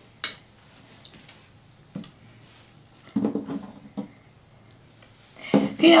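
A few light knocks and clicks as a painted canvas and tools are handled on a worktable: a sharp one just after the start, another about two seconds in, and a short cluster around three seconds.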